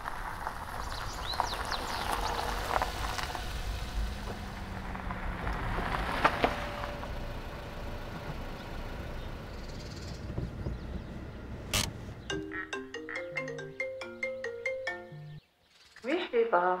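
A mobile phone ringtone, a short melody of quick stepped electronic notes, plays over a steady background hiss. It starts about twelve seconds in and cuts off abruptly after about three seconds.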